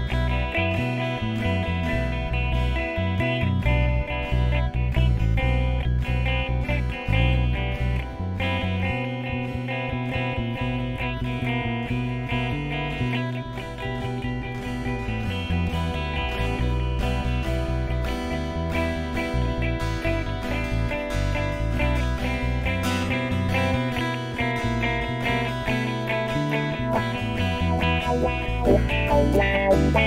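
Instrumental break in a song: guitars strummed and picked over a moving bass line, with a steady beat.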